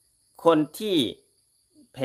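A man speaking Thai: a short phrase, a pause, then the start of the next word. A faint steady high-pitched tone runs under his voice.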